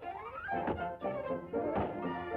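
Early-1930s cartoon orchestral score with a rising glide in pitch at the start and a single thunk near the end.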